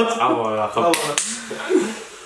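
A man talking and laughing, with one sharp clap of the hands about a second in.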